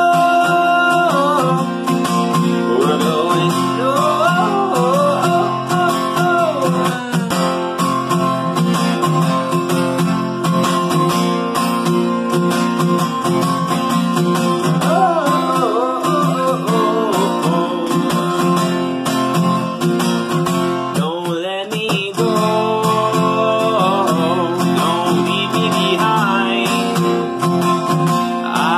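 Steel-string acoustic guitar strummed steadily, with a man singing over it.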